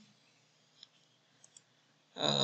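Near silence with a few faint computer mouse clicks: one a little under a second in, then two close together about halfway through.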